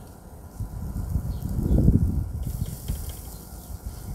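Charcoal grill hissing softly under skewered chicken and vegetables, the hiss growing stronger about halfway through, over an uneven low buffeting on the microphone that is loudest near the middle.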